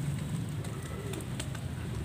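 Foamy water settling in a plastic basin after splashing, with faint fizzing and a couple of small drips, while a dove coos softly in the background.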